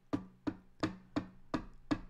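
A steady series of sharp taps or knocks, about three a second, each followed by a short low ring.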